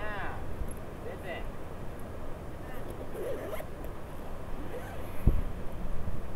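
A large soft-sided suitcase being zipped shut, with short scraping zipper pulls and faint voices. A single sharp thump comes about five seconds in.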